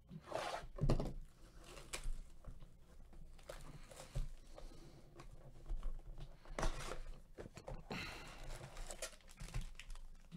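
Foil trading-card packs crinkling and rustling as they are pulled from the hobby box and stacked, with a tearing sound about a second in. The sound comes in short, irregular bursts of handling noise.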